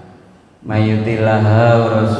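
A man's voice chanting Arabic recitation in long, drawn-out melodic notes into a handheld microphone. It comes in about two-thirds of a second in, after a brief lull.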